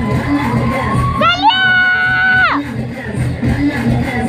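Cheer-routine music with a steady beat plays loudly while a crowd of students shouts and cheers. About a second in, one high cry glides up, holds level for about a second, and drops away.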